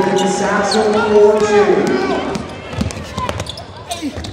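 Basketball game sounds in a gym: a raised voice carrying over the court for the first couple of seconds, then the ball bouncing on the hardwood floor with short sharp knocks.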